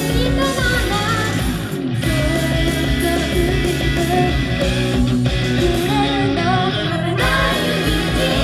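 Pop-rock idol song with guitar, sung by a group of female voices over the backing music and played loud through a live club's sound system.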